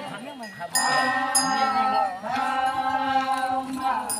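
A group of voices chanting a traditional festival song in unison, holding long drawn-out notes that swell about a second in and dip briefly in pitch about two seconds in. Two short, sharp high clinks come near the first second.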